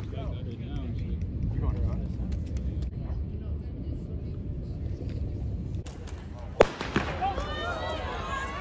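Steady low wind rumble on the microphone with faint distant voices. About six and a half seconds in, a starter's gun fires once for a sprint start, a single sharp crack with a short echo, followed by crowd voices.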